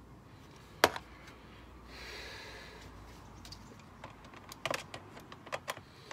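Screwdriver clicking against the screws and plastic air filter housing while undoing them: one sharp click about a second in, then a run of small clicks near the end.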